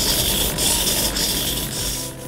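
Hobby servo motors in a small tracked EZ-Robot's arms whirring as the robot dances, a steady mechanical noise that eases off near the end.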